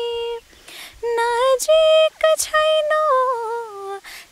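A woman singing a slow melody unaccompanied, holding long, fairly high notes with small turns of pitch, with a short break about half a second in and quick breaths between phrases.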